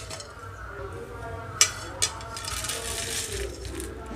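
Two sharp clinks of metal cookware, about a second and a half and two seconds in, as a nonstick pan of dry-roasted lentils, red chillies and garlic is emptied onto a steel plate.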